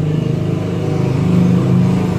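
An engine running steadily, a low even drone that grows a little louder after about a second.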